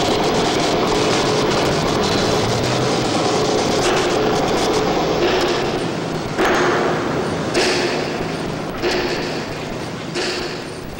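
Construction-site machinery din, a steady dense noise with a faint hum in it, which changes abruptly a few times in the second half.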